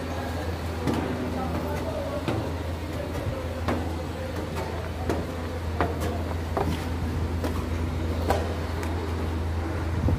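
Construction-site background: a steady low machine hum with irregular knocks and clicks scattered throughout.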